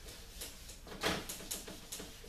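Several quick wiping strokes across a whiteboard, each a short scrubbing hiss, about five in two seconds.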